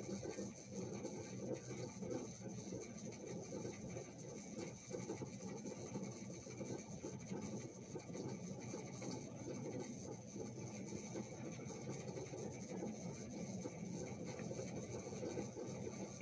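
Faint, steady rustling and scratching of fingers working a black cord into knots close to the microphone, with many small scratches and no pauses.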